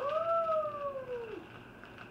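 A boy's long, wordless 'oooh', rising quickly in pitch and then sliding slowly down. It ends about one and a half seconds in.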